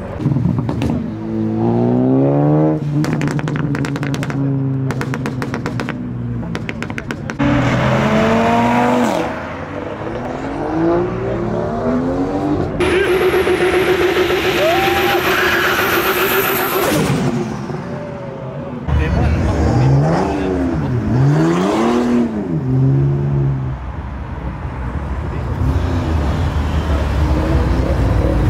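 Several car engines revving hard and accelerating away. Midway, a Volvo 240 does a burnout: the engine is held at high revs over the hiss of spinning tyres. Later an engine is revved up and down three times in quick succession.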